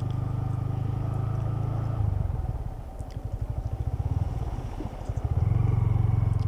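Motorcycle engine running as the bike rides along wet beach sand. About two seconds in the engine note drops and turns uneven and pulsing, then steadies again near the end.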